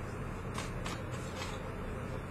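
A deck of tarot cards being shuffled by hand: a soft, steady rustle of cards with a few crisp taps.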